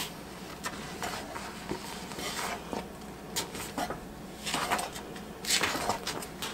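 A spatula stirring a heap of granulated sugar into thick cranberry jam in a heavy pot, with scattered scrapes and light knocks against the pot's sides.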